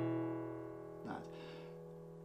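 Acoustic guitar's bass strings of an open E chord, sounded together just before and left to ring, fading slowly.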